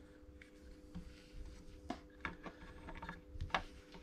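Faint clicks and rustles of a hand-held plastic battery capacity meter and its leads being handled, a few sharp clicks spaced over the seconds, over a faint steady hum.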